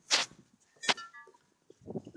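Handling noise on a handheld camera: a brief rustling burst, then a sharp knock just under a second in.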